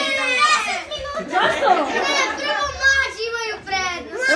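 A roomful of children's voices talking and calling out over one another, high and overlapping, with no single clear speaker.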